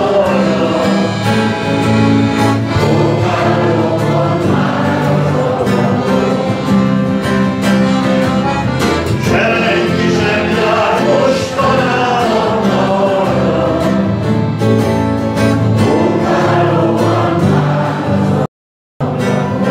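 A man singing into a microphone, accompanied by an accordion and an acoustic guitar. The voice comes in phrases over sustained accordion chords that keep playing between them.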